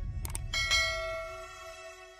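Subscribe-button sound effects: a low thud, a quick double mouse click, then a bright bell chime that rings on and slowly fades.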